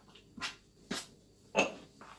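A spoon knocking and scraping against a glass mixing bowl while stirring bun dough, three short clinks about half a second apart.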